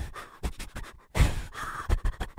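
A few faint clicks, then about a second in a man's breathy laugh.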